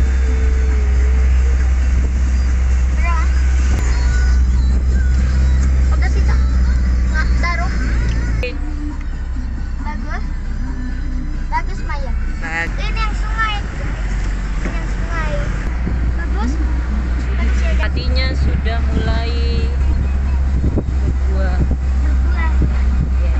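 Steady low rumble of a moving car heard from inside the cabin, changing about eight seconds in. Music and voices are heard over it.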